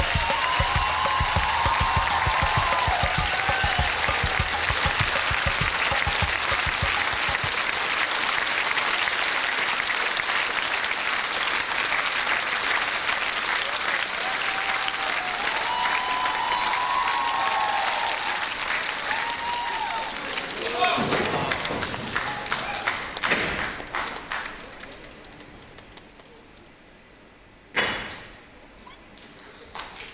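Studio audience applauding and cheering, with a low regular beat under it for the first several seconds; the applause dies away a few seconds before the end.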